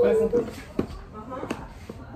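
A young boy speaking briefly, followed by a couple of light knocks about a second in and again halfway through.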